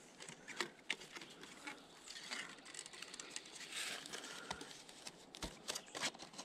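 Faint scattered clicks and rustles of an LED light strip being unwound by hand from its plastic reel.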